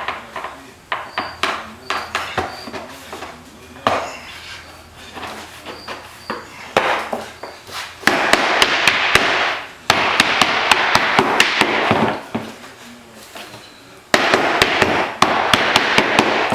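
Mallet blows on steam-softened white oak boat ribs, driving them into bending forms on a wooden jig table. Scattered knocks at first, then three stretches of rapid, loud blows, starting about halfway through.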